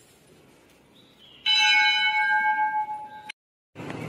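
A temple bell struck once, ringing with several overlapping metallic tones for nearly two seconds before the sound cuts off suddenly.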